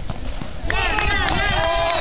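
Several people shouting and calling out at once from the sidelines, starting about two-thirds of a second in, over a steady low rumble.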